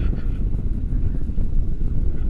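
Wind rushing over an action camera's microphone during a tandem paragliding flight: a steady, loud low rumble of airflow buffeting.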